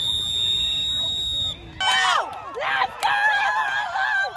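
A single long whistle blast on one steady high note for about a second and a half, most likely a referee's whistle. Then high-pitched shouting and cheering from spectators at the sideline.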